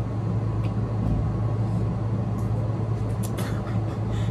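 A steady low machine hum with a faint hiss above it, and a few faint clicks a little after three seconds in.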